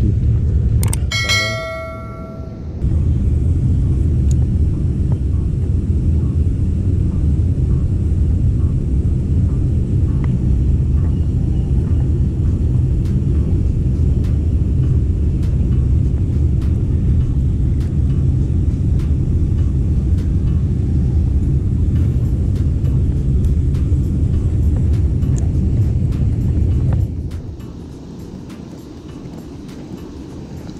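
A short bell-like chime rings about a second in, then a loud, steady low rumble of wind and flowing river water on the camera's microphone, which drops away abruptly near the end.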